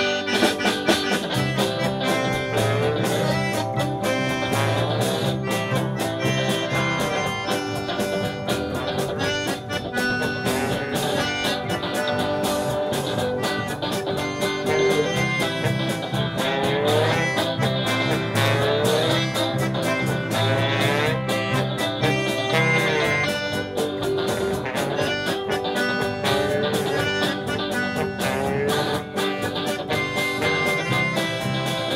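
Live polka band playing a Pittsburgh-style polka: clarinet, accordion, trombone, electric guitar and bass guitar over a bouncing oom-pah beat. Short rising slides recur through the middle of the tune.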